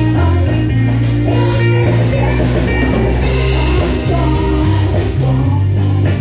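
Live rock band playing: electric guitar and drum kit, with a man singing into a microphone. Drum and cymbal hits come thicker in the last second and a half.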